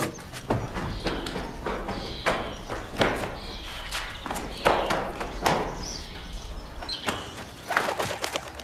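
Film soundtrack played through a video-call screen share: a man's running footsteps, a string of irregular knocks and thuds.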